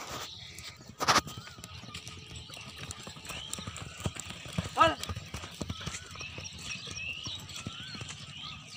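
Hoofbeats of ridden horses galloping on a dirt field, mixed with people's voices. There is a sharp loud noise about a second in and a loud rising-and-falling call near the five-second mark.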